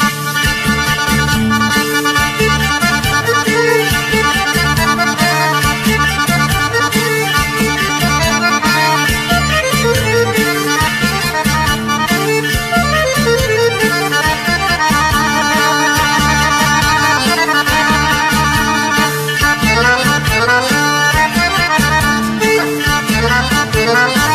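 Instrumental break of a Greek popular-song karaoke backing track: a melody line over a steady bass and drum beat, with no singing.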